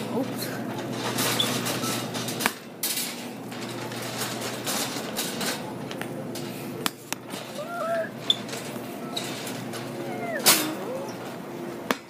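Shopping cart being pushed, with rattling and a few sharp knocks and clatters scattered through, over faint distant voices.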